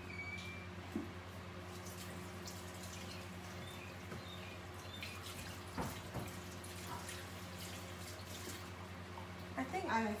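Quiet kitchen room tone with a steady low electrical hum, a few soft knocks and faint distant voices.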